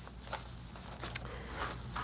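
Faint rustling with a few light clicks from sewing patterns being handled.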